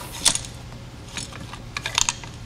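Homemade wooden M&M dispenser with a mason-jar hopper being worked by hand: its wooden lever clacks and the candy clicks and rattles as an M&M drops into the chute. One louder click comes shortly after the start, then a quick cluster of clicks near the end.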